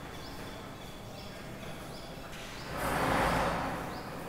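Background noise with a short, high rising chirp that repeats about every half second. About two and a half seconds in, a rushing noise swells up and fades again over a second and a half, the loudest sound here.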